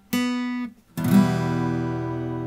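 Acoustic guitar playing a single note (the B of the E minor triad), then about a second in the three notes E, G and B sounded together as an E minor chord, left ringing.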